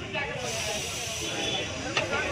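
Background chatter of voices with general street noise, and a steady hiss that comes in about half a second in.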